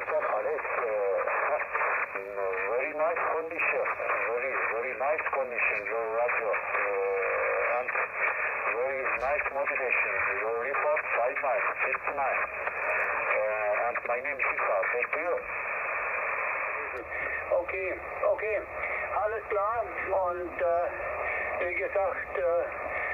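A distant amateur station's voice received in single-sideband on a Yaesu FT-817 shortwave transceiver: thin, band-limited talk over steady band noise, hard to make out.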